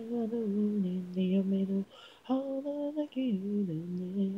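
Unaccompanied lead vocal from an isolated a cappella track of a pop song: two sung phrases of held notes stepping downward in pitch, with a short breath break a little before halfway.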